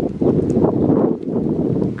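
Loud, gusty wind buffeting the camera microphone, a crackling low rumble.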